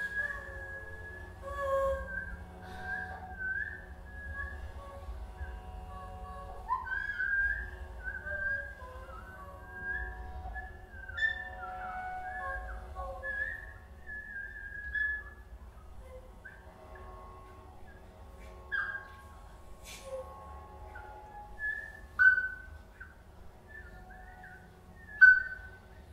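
Free improvisation for voice and electronics: short whistle-like chirps and sliding squeaks, high and broken up, over quiet held tones and a low hum. Sharper accents come every few seconds, the loudest near the end.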